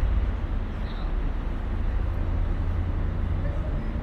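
Outdoor city ambience: a steady low rumble with an even background hiss and faint voices.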